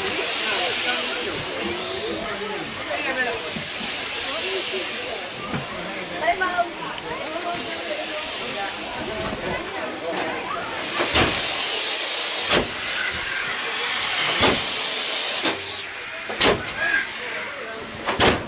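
Steady hiss of steam from a steam yacht swinging-boat ride, with rushes of louder hiss every few seconds and a long, loud stretch of hissing from about ten to fifteen seconds in. A few sharp knocks come in the second half.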